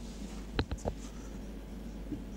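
Marker pen writing on a whiteboard: three short, sharp strokes close together about half a second to one second in, over a steady low hum.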